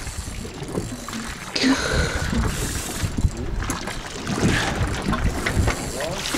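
Wind buffeting the microphone over the low rumble of a boat at sea, with no voices. About a second and a half in, a brief high tone falls and then holds for a moment.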